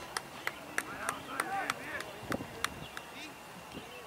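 Distant shouting and calling voices on an outdoor football pitch, with scattered short, sharp clicks throughout.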